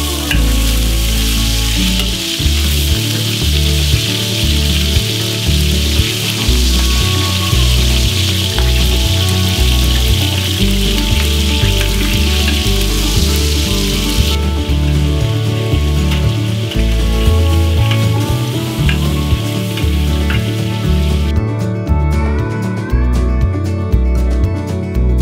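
Meat sizzling as it fries in fat on a large round steel pan, over background music with a steady beat. The sizzle is loud for the first half, drops lower a little past halfway and stops a few seconds before the end, leaving only the music.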